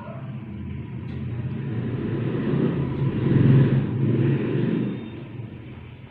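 A motor vehicle driving past: a low rumble that grows louder, peaks about three and a half seconds in, and dies away about a second later.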